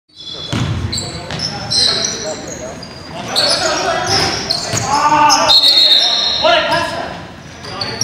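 A basketball bouncing on a hardwood gym floor amid repeated short, high squeaks of sneakers on the court during play, with shouting players mixed in. The sound echoes in a large gymnasium.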